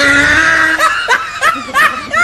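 A person laughing: one long high note, then a run of short laughs.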